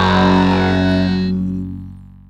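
The song's final held chord on distorted electric guitar ringing out and dying away, the high notes fading first and the whole chord falling steadily in level over the last second.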